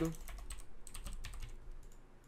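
Typing on a computer keyboard: a quick, irregular run of light keystrokes that thins out near the end.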